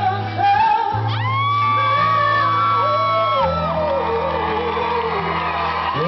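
Live rock band playing, with a voice holding long, high notes over bass and guitar.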